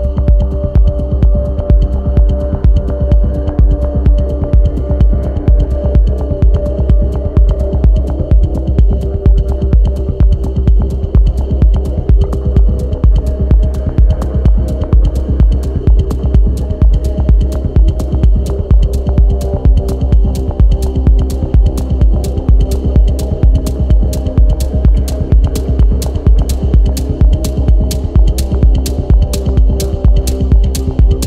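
Techno track: a heavy kick drum pounds steadily at about two beats a second under sustained synth chords. Crisp hi-hat ticks ride the beat and grow brighter about halfway through.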